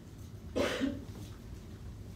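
A person coughs once, a short burst a little over half a second in.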